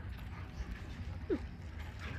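A husky gives one short, falling yip about two-thirds of the way in, over a low steady rumble.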